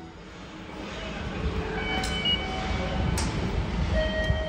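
Low, steady rumble of a train, with faint steady tones over it and two short clicks, about two and three seconds in.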